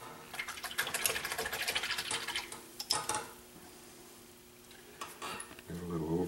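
Paintbrush stirred and swished in a small container of rinse water, clicking against its sides for about three seconds, then one more short swish.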